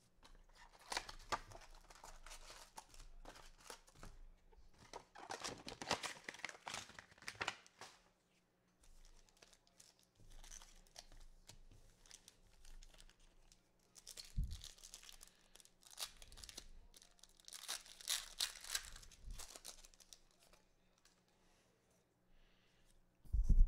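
Trading card box wrapping and card pack wrappers being torn open and crinkled by hand, in several short, faint bursts of tearing and rustling.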